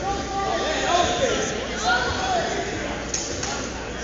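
Indistinct voices of spectators and coaches calling out over one another, echoing in a large gym hall, with one sharp click about three seconds in.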